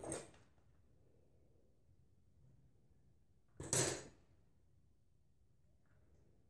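A quiet room broken once, about halfway through, by a single short clack from the hair-setting tools being handled.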